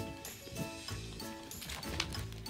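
Background music, with rapid clicking and scraping as a French bulldog licks inside an empty yogurt cup and pushes it along the floor.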